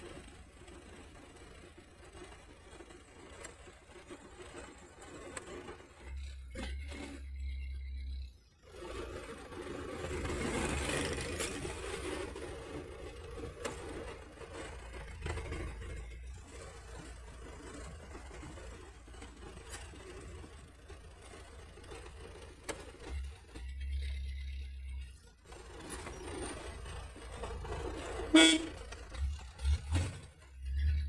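Running engine and road noise heard from inside the cab of a light truck on the move, with a short, loud horn toot near the end.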